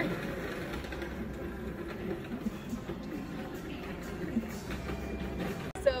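Faint background music over outdoor ambience, with a person quietly chewing a bite of a sandwich filled with crunchy tortilla chips.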